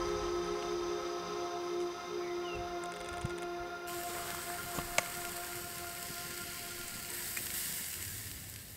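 Sustained ambient music chords slowly fading out. From about halfway, the soft sizzle of chops cooking on a grill grid over a wood fire comes in, with a sharp crackle about a second later.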